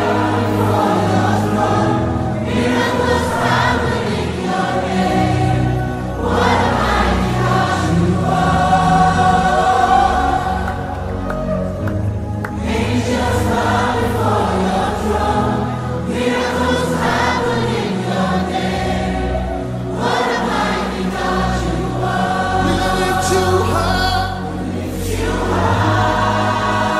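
Gospel worship song: a choir sings long phrases that break about every four seconds, over a sustained instrumental backing.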